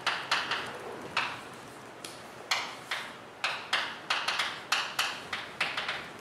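Chalk writing on a blackboard: a string of irregular sharp taps and short scrapes as the stick strikes and drags across the slate, some coming in quick clusters.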